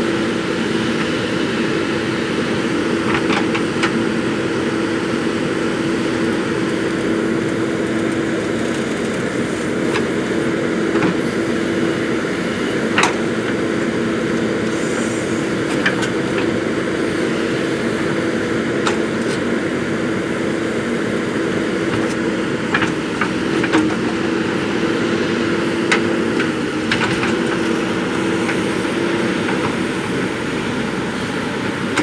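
JCB 3DX backhoe loader's diesel engine running steadily under load while the backhoe arm digs, a constant drone with a steady low hum. Scattered sharp knocks and cracks from the bucket working through soil, stones and wood sound several times over it.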